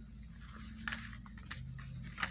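Tarot cards handled in the hand: faint scraping of card stock with a few light clicks as a card is worked loose from the deck.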